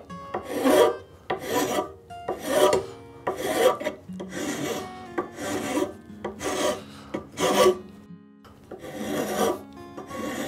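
Steel hand file being pushed across a zebrawood plane tote, shaping it with steady rasping strokes about once a second, with a brief pause about eight seconds in.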